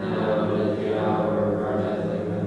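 A congregation praying aloud together in unison, a steady chant-like drone of voices on a near-constant pitch, resuming just after a brief pause for breath.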